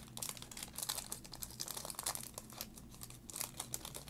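Foil wrapper of a Topps baseball card pack crinkling and tearing as it is peeled open by hand, an irregular run of crackles throughout.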